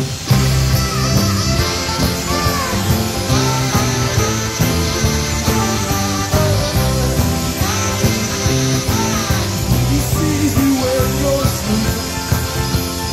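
Live rock band playing an instrumental stretch of a rock-and-roll Christmas song at full volume, with a lead melody line bending in pitch over steady bass and drums.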